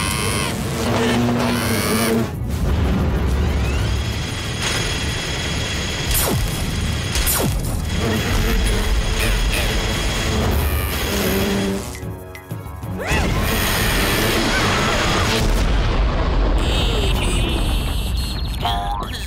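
Cartoon action sound effects, booms and crashes layered over action music, with sharp hits about six and seven seconds in and a brief drop about twelve seconds in.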